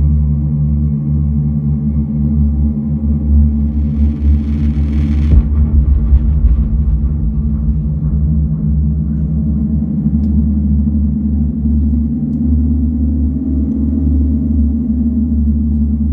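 Live ambient electronic music: a dense, sustained low drone of layered steady tones. About four seconds in, a hiss swells and cuts off with a deep low hit, then the drone carries on.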